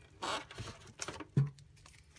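Handling noise: a few short rustles and scrapes as a handheld GPS unit is pulled out of its moulded plastic packaging tray.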